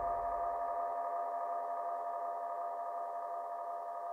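The final sustained chord of a disco fox dance track ringing out and slowly fading after the last hit, the bass dying away about a second in.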